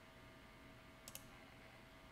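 Near silence, broken about halfway through by a single faint computer mouse click, heard as two quick ticks close together.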